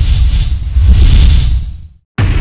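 Logo-intro sound effect: a loud, deep rumbling whoosh with a hissing top, swelling twice and fading out near the end.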